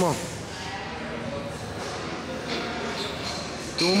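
A shouted 'come on' right at the start, then a faint, wavering strained voice of a lifter holding a heavy barbell on his back between squat reps, with no clank of the bar.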